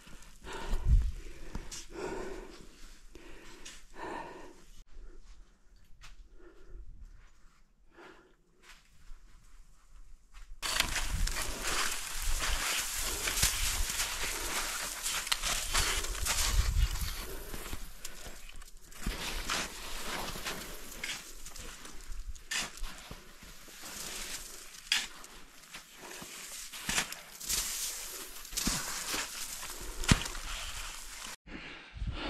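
A climber breathing hard while stabbing ice axe picks and kicking steps into soft snow. About ten seconds in it becomes much louder and closer, a dense run of scraping, crunching and rustling strokes.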